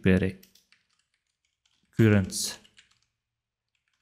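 Faint typing on a computer keyboard, heard in the pauses between short stretches of a man's speech, one just at the start and another about two seconds in.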